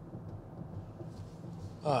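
Quiet car-cabin background: a faint, steady low hum with nothing else standing out.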